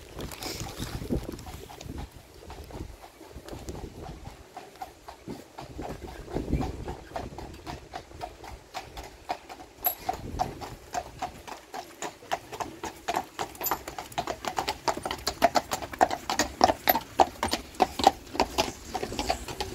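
A team of horses pulling a horse-drawn hearse, their hooves clip-clopping on a tarmac road. The hoofbeats grow steadily louder as the horses draw near.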